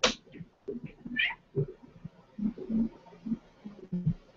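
A domestic cat making several short, low vocalisations, after a sharp knock at the very start.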